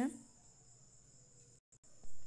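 Faint, steady, high-pitched background sound in a pause between speech, cut by a brief dropout to total silence near the end.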